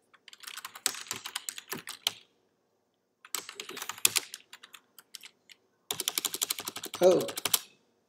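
Typing on a computer keyboard: three bursts of rapid keystrokes separated by short pauses, as commands are entered into a terminal.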